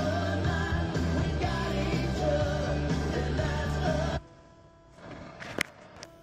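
A song with singing playing over the car's FM radio from an aftermarket Android touchscreen head unit, cut off suddenly about four seconds in as the unit leaves the radio screen. A short sharp click comes near the end.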